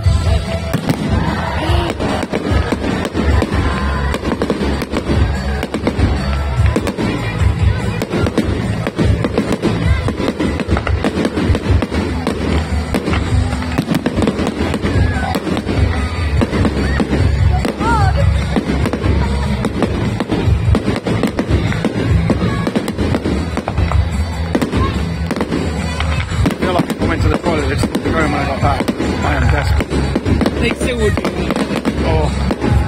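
Fireworks display: aerial shells bursting in a continuous barrage, many bangs in quick succession with no let-up, over music.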